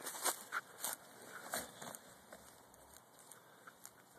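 Narragansett turkeys pecking at dry corn kernels on the ground: a run of sharp, irregular pecks and crunches, loudest in the first second.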